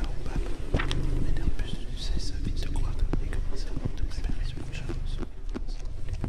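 Close-miked ASMR-style whispering, breathy and unintelligible, with many short sharp clicks scattered through it.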